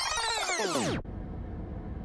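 Synthesized transition sound effect: a sweep with many stacked tones that arcs up and back down in pitch, then cuts off suddenly about a second in, leaving a low steady hum.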